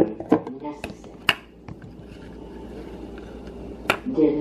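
Plastic lid being pulled off a glass food-storage container and set down on a counter: a few sharp clicks and knocks in the first second and a half, and another click near the end, with quiet room noise in between.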